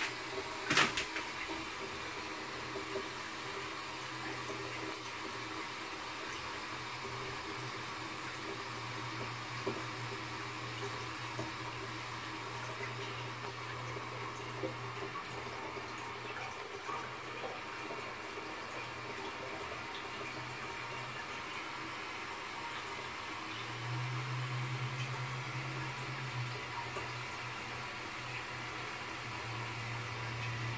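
Shires Denbigh low-level WC cistern refilling slowly: a steady hiss of water running in through the fill valve, with a low hum that comes and goes. A sharp click about a second in.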